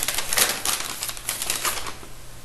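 Close, rapid crinkling and rustling of something being handled, a quick run of small crackles that stops suddenly near the end.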